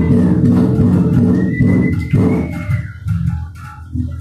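Live band playing loud electric guitars over bass guitar in a dense, droning texture. A high held tone slides in pitch around the middle, and the playing thins out near the end.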